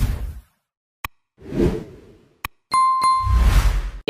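Video-editing app logo sting: three whooshes with a deep low rumble, punctuated by sharp clicks, and a short bright ding near the end.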